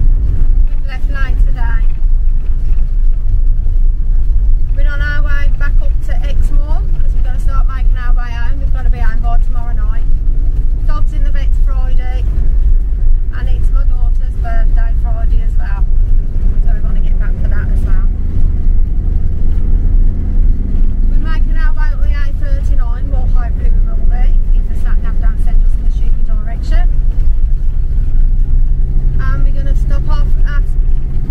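Steady low road and engine rumble inside a moving motorhome's cab. An intermittent voice comes and goes over it.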